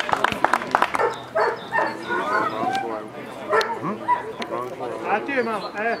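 Dobermans barking and yipping in short calls. A quick run of sharp clicks comes in the first second.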